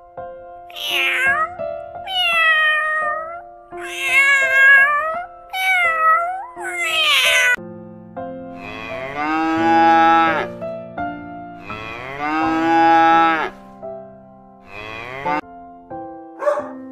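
A domestic cat meowing about five times in quick succession, followed by a cow mooing twice in long drawn-out calls.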